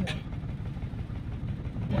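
Steady low rumble inside a moving car's cabin: engine and tyre noise on a concrete road.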